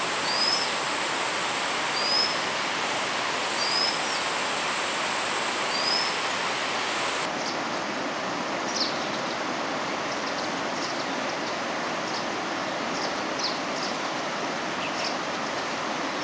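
Steady loud rush of flowing water with a white-capped redstart's thin, rising-and-falling whistled call repeated about every second and a half. About seven seconds in, the sound changes abruptly and the calls stop. After that the water noise continues under scattered brief, thin high bird notes.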